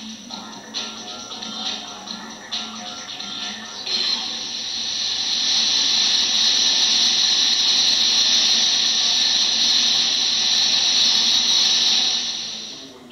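Music from a video soundtrack, then from about four seconds in a loud, steady hiss of a rocket engine test firing on a stand. It is heard as playback through a hall's loudspeakers.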